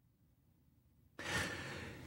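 About a second of dead silence, then a man's soft, breathy in-breath about halfway through, drawn just before he speaks.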